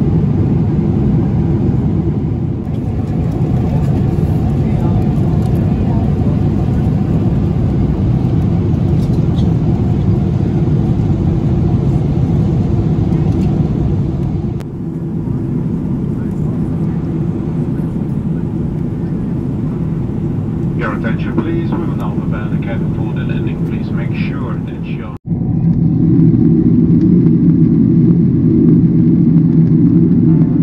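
Steady low rumble of a Boeing 777-300ER cabin in cruise, engine and airflow noise heard from an economy window seat, with abrupt changes at edits about three, fifteen and twenty-five seconds in; after the last it becomes a somewhat louder, fuller drone. A brief patch of crackling sits about two-thirds of the way in.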